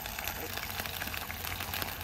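Meat frying in hot oil in a pan on a portable gas stove: a steady sizzle dotted with fine crackles of spitting oil.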